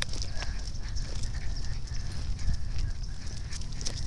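Footsteps on a concrete sidewalk during a dog walk: many small irregular clicks and scuffs over a low steady rumble.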